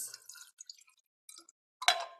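Water poured from a glass pitcher into a small drinking glass: a light splash at first, thinning to scattered drips. Near the end a sharp glass-on-glass clink rings briefly.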